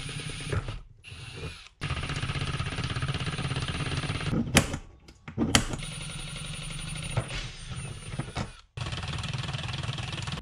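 Cordless drill boring into eighth-inch steel plate, running in three or four spells of a few seconds with brief stops between them.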